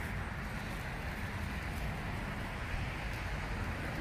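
Steady rumbling noise of a cart's wheels rolling over asphalt.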